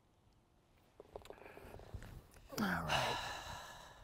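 About a second of near silence, then a few faint ticks over low outdoor background noise. About two and a half seconds in, a man lets out a drawn-out, sighing "alright" that falls in pitch and fades.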